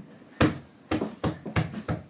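Mini basketball bouncing on the floor of a small room: one loud bounce about half a second in, then a run of shorter bounces coming quicker and quicker as the ball settles.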